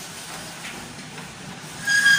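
Steady, even background noise with no distinct events; a voice starts right at the end.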